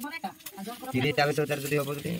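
A person talking, with a short pause about half a second in.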